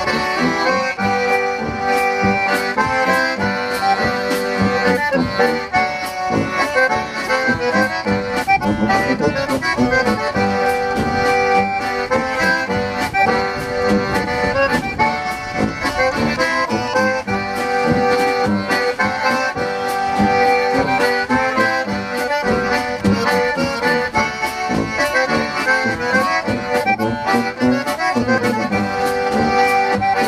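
Concertina playing a tune, backed by a tuba and a drum kit keeping a steady beat.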